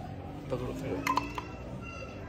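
Plastic screw cap of an engine-oil bottle being twisted open: three sharp clicks close together about a second in, with a thin squeak as the seal gives.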